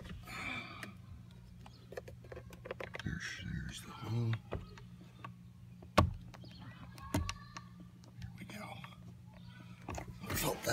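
Scattered small clicks and taps of a small tool and fingers working at the plastic release holes behind a steering-wheel airbag, with one sharp knock about six seconds in.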